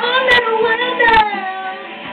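A high voice sings one long, wavering note. The note slides down in pitch after about a second and a half and fades. Two sharp guitar strum hits come under it.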